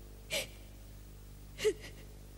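A woman crying: two short, catching sobs a little over a second apart.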